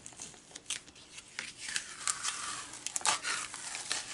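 Cotton fabric being peeled off a sticky cutting mat's fabric support sheet and the plastic mat being handled: irregular crinkling, tearing-like rustle with a few small clicks.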